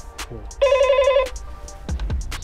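Door-entry intercom call tone after its button is pressed: a short warbling electronic trill lasting under a second, starting about half a second in.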